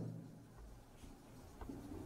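Faint scratching of a marker pen writing on a whiteboard, in short strokes.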